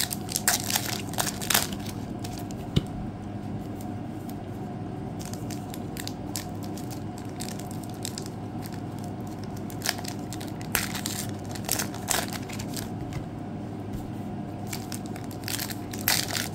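Foil trading-card pack wrapper crinkling and tearing as it is opened by hand. The crackle comes in short spells near the start, again around ten to thirteen seconds in, and near the end, with quieter rustling between.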